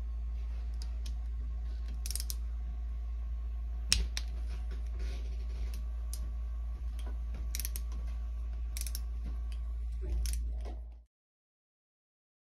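Socket wrench clicking and clinking on the cylinder-head nuts of a Ski-Doo 800R two-stroke twin as they are snugged down, with one sharp click about four seconds in, over a steady low hum. The sound cuts off suddenly about a second before the end.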